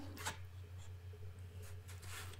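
Faint rustle of sheets of watercolour paper being slid across one another by hand, over a low steady hum.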